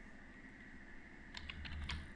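Computer keyboard typing: a quick run of about five faint keystrokes in the second half.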